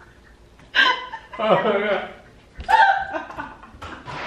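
Three short bursts of human vocal sound, laughter mixed with gasping, hiccup-like sputters, as a spoonful of dry cinnamon is taken for the cinnamon challenge.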